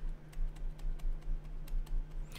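Light clicks of a stylus tip on a pen tablet during handwriting, about four a second, over a low steady electrical hum.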